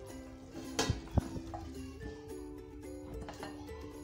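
Background music with steady held notes. About a second in there are two sharp knocks as an aluminium pot lid is set down on top of the cloth-covered cooking pot.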